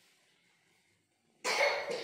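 A person coughing, two quick loud coughs about one and a half seconds in.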